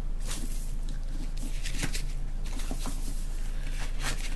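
Hands handling a hardback book with a dust jacket, turning it over: a few faint taps and rustles over a steady low hum and hiss.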